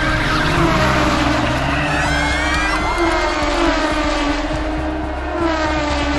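Race car sound effect: engines revving, their pitch sweeping down and up as they pass, with some tyre squeal.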